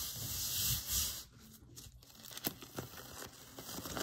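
A palm rubbing rice paper pressed onto a gel printing plate, a soft rustle that fades out about a second in. After that, only faint crinkles and ticks of the paper as it is peeled off the plate.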